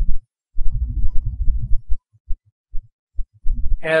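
Loud, uneven low rumbling and thumping, strongest in the first half. It breaks off into a few short low thuds and a brief silence, then returns just before the end.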